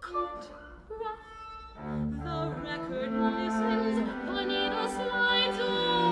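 A soprano singing with a string quartet. The texture is sparse and quiet at first; about two seconds in, the cello and the other strings come in fuller and louder under her wavering, vibrato-laden line.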